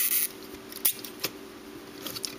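Plastic Lego pieces being handled, with a short rustle and then two light clicks as the robot's arm joints are swung into position.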